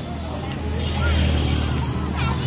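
Steady low rumble of a vehicle's engine and motion, growing louder about half a second in, with faint voices over it.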